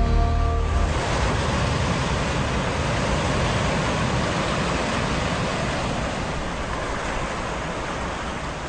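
TV station ident soundtrack: held music notes over deep bass end about a second in, giving way to a steady rushing noise that slowly fades.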